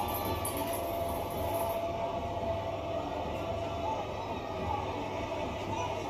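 Steady arena crowd noise from a wrestling broadcast playing in the room, with faint music under it and a low hum.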